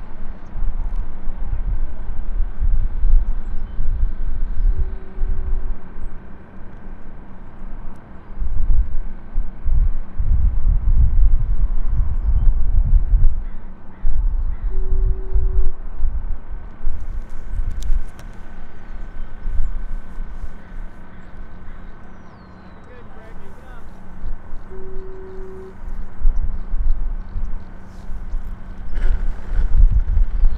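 Wind buffeting the microphone in gusts, under a faint steady hum, with three short low beeps about ten seconds apart.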